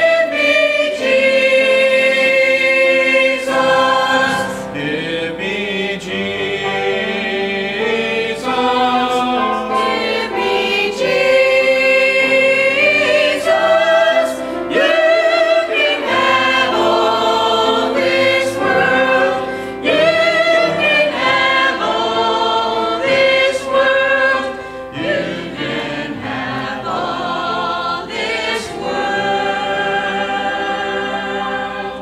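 A church choir of men and women singing a hymn, holding long notes that change every second or so, a little softer in the last few seconds.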